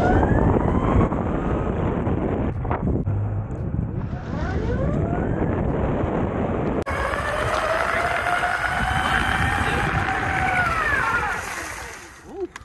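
Electric skateboard motors whining and rising in pitch as the board accelerates hard from a standstill, over tyre rumble and wind on the microphone. The rising whine starts over three times. The last run levels off, then falls in pitch near the end as the board brakes.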